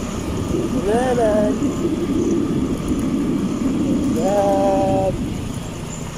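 Steady low wind noise on the microphone of a phone being carried on foot. A person's voice calls out twice over it: a short rising-and-falling call about a second in, and a held note a little after four seconds.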